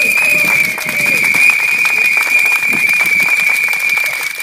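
Crowd applauding, with dense clapping, under one loud, steady high-pitched whistle-like tone held throughout.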